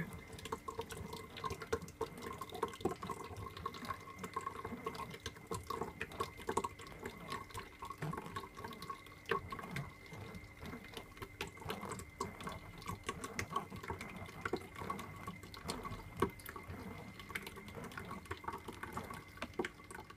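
Metal spoon stirring thick blended fruit juice in a mesh strainer: pulpy liquid sloshing and dripping through, with many small irregular clicks of the spoon, over a faint steady hum.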